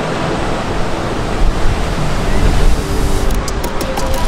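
Ocean surf breaking and washing in, a loud steady rush of water with a deep low rumble under it. Faint music runs beneath it, and a few sharp clicks come near the end.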